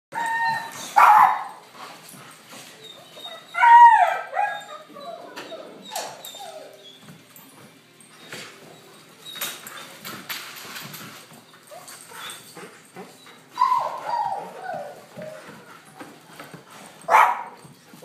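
German Shepherd puppies barking and yipping in play-guarding. High-pitched barks come loudest about a second in, near four seconds, near fourteen seconds and just before the end, with quieter yips between.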